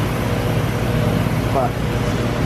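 Electric motor and gearbox of an FS-Sugar ETL stainless steel sugarcane juicer running steadily as its rollers crush a sugarcane stalk; the drive is a two-horsepower motor.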